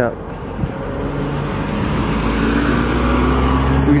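A motor vehicle driving close by, its engine hum and tyre noise growing louder over about three seconds as it comes near.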